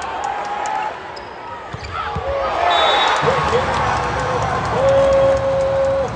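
Indoor volleyball rally in a large arena: sharp ball contacts and sneaker squeaks on the hardwood court, then the crowd cheers about two and a half seconds in as the point ends. A long steady tone is held near the end.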